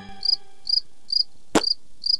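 Cricket-chirp sound effect: five short, high chirps about half a second apart, the cartoon gag for an awkward silence after an unanswered question. A single sharp click about one and a half seconds in.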